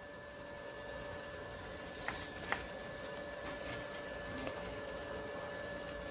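Quiet room tone: a faint steady hum with an even background hiss, and two light clicks about half a second apart roughly two seconds in.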